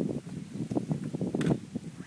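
Indistinct low talk from a group of people, with a single sharp click about one and a half seconds in.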